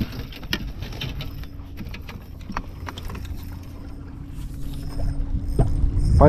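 Water lapping against a small aluminum fishing boat's hull with wind rumble on the microphone, broken by scattered clicks and knocks of gear on the deck. A faint steady hum comes in about two seconds in.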